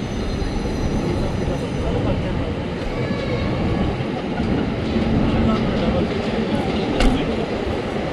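Steady rumble of a passing train, with a single sharp click about seven seconds in.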